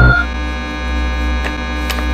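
Loud, steady electronic buzzing drone full of overtones, a horror-video sound effect; a moment after it starts it steps down to a lower, softer tone and holds there.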